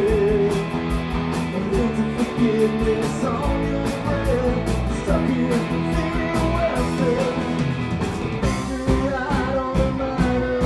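A rock band playing live: electric guitar over a steady drum beat with cymbal hits, and a man singing lead.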